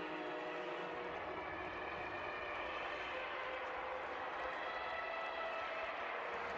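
Stadium crowd cheering as a steady roar of many voices, the reaction to a touchdown just scored, heard through the TV broadcast with faint held tones in the mix.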